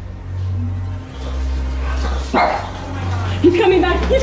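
A small dog barking, once about halfway through and again in a short run near the end, over a low droning music bed.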